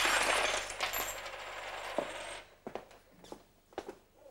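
A handful of loose coins clattering and jingling in a dense rattle for about two seconds, followed by a few scattered small clicks.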